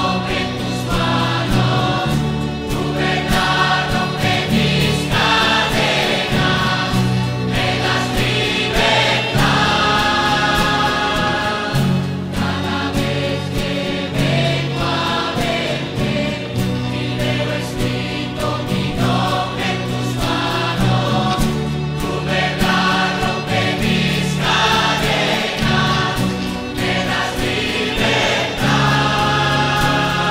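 Christian choral music: a choir singing long held chords over instrumental backing with a steady bass.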